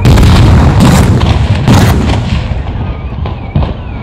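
Staged explosive charges blasting in a row of fireballs. One loud blast comes right at the start and two more follow about a second apart, dying away into a rumble with a few smaller cracks near the end.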